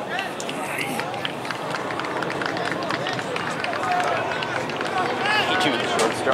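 Overlapping, indistinct voices of soccer players and spectators calling out during play, with the calls growing louder and more frequent near the end.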